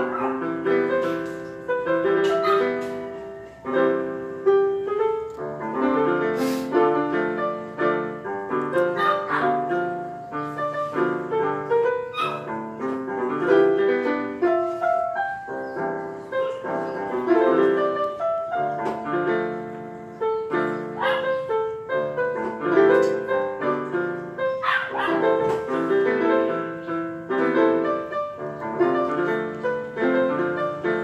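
Portable electronic keyboard played on a piano voice: a melody over sustained chords, each note struck and then fading.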